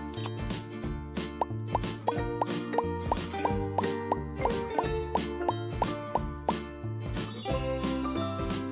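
Upbeat background music with a steady beat, overlaid with a run of quick bubbly plop sound effects, about three a second. Near the end a bright, sparkly chime effect runs down in pitch.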